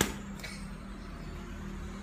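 A sharp snap right at the start and a fainter one about half a second later from fast, forceful White Crane kung fu arm strikes, over a steady low hum.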